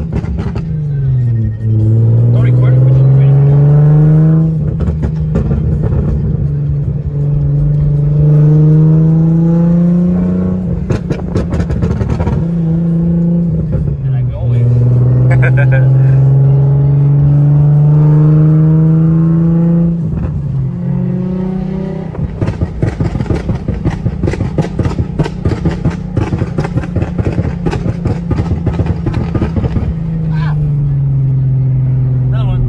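Nissan 350Z's 3.5-litre V6, heard from inside the cabin, pulling hard through the gears several times, its pitch climbing and dropping back at each upshift. Between pulls, and in a long rapid run near the end, the exhaust crackles and pops as the throttle is lifted: the pops and crackles that the tune's crackle map adds on deceleration.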